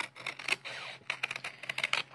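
Paper scissors cutting through corrugated paper: a quick, uneven run of crisp snips and crunches.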